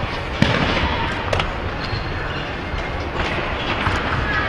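Sharp thuds and bangs of gymnasts landing on apparatus, echoing around a large training hall over steady hall noise. The loudest thud comes about half a second in, with several lighter knocks after it.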